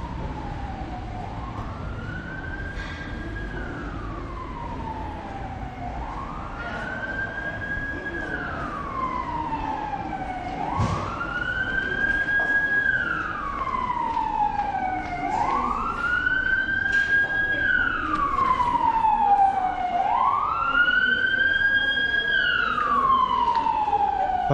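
An emergency vehicle's siren wailing in slow cycles, each rising, holding high and then falling, about every four and a half seconds, growing louder.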